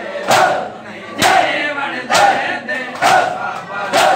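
A crowd of men doing matam, beating their chests in unison about once a second, five strikes, with loud shouted chanting of the mourners between the strikes.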